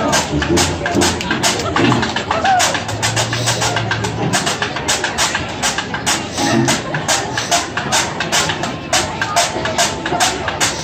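Traditional New Orleans jazz band playing live: a washboard scrapes and clicks a quick, steady beat under tuba, banjo, guitar and horns.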